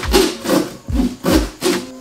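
Corrugated cardboard boxes being pulled open and flattened by hand: a quick series of scraping, rustling bursts, each with a dull thud as the cardboard flexes and hits the floor.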